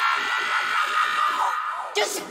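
Techno in a DJ mix with the kick drum and bass cut out, leaving a steady mid-range synth drone and hiss.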